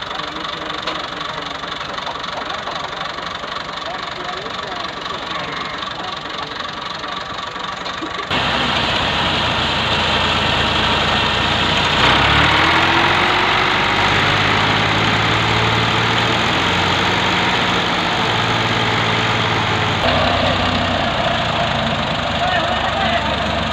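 Farm tractor diesel engine running as it tows a second tractor on a chain. The sound jumps abruptly louder about eight seconds in, and the engine's pitch rises a little later as it revs up under the load.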